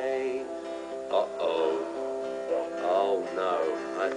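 Acoustic guitar strumming steady chords as a children's song finishes, with a few brief children's voices over it.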